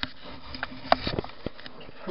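Handling noise from a handheld camera being swung round: a few sharp clicks and short rustles, bunched around a second in, with a breathy sniff among them.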